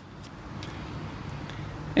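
Faint outdoor background with two soft snips within the first second from hand pruning shears cutting back a willow bonsai's leader.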